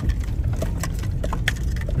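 Car cabin noise as the car rolls slowly over a rough, rocky dirt road: a steady low rumble with sharp knocks and rattles from the tyres and body jolting over stones, about half a dozen in two seconds.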